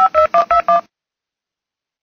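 Touch-tone telephone keypad dialing: a quick run of about five DTMF key tones, each a short beep of two tones sounding together, stopping a little under a second in.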